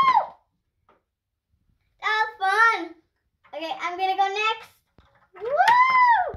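A young child's voice vocalizing in play, without clear words: a long call that rises and falls in pitch at the start, short syllables and a quick run of sounds in the middle, and another long rising-and-falling call near the end.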